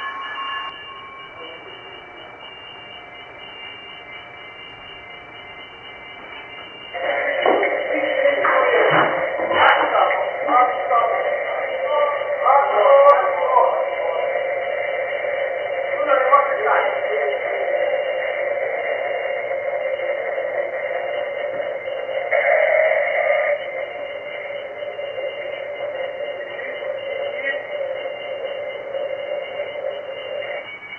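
Thin, hissy black-box recording of the Costa Concordia's bridge: about seven seconds in a steady alarm tone starts and keeps sounding, with voices on the bridge over it. The alarm comes up with the bridge alarm system's fault warning at the presumed loss of propulsion.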